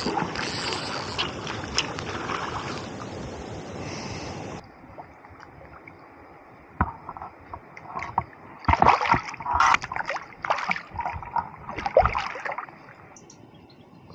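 Splashing and rushing stream water as a hooked brown trout is brought to the net. About four and a half seconds in the sound cuts abruptly to a quieter background, broken by a string of short, sharp splashes and knocks as the fish thrashes in the landing net and is handled.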